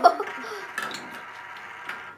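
Small plastic Mighty Beanz toy capsules clicking and rattling as they are opened and handled, with a couple of sharper clicks among the handling noise.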